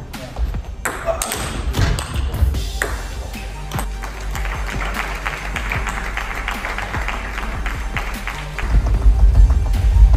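A table tennis ball ticking off the bats and the table in a rally, a few sharp ticks in the first few seconds. Music plays under it and gets louder near the end.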